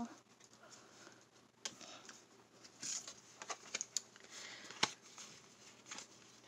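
Tarot cards sliding across a wooden desktop and being laid down: soft scrapes and light taps, with one sharper click about five seconds in.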